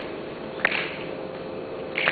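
Slow, steady hand claps, one about every second and a half, in a reverberant hall, keeping the beat before the singing starts. A faint steady hum sits underneath.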